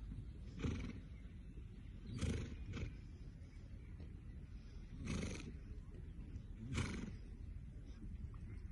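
A ridden horse snorting five times at uneven intervals, each a short noisy blast of breath, over a steady low background rumble.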